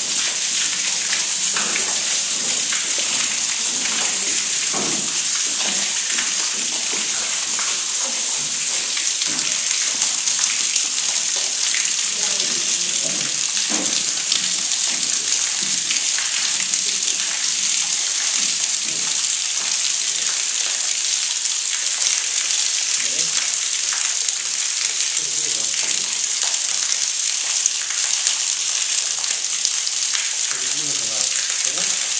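Water running and dripping down cave rock: a steady splashing hiss with scattered drip sounds throughout.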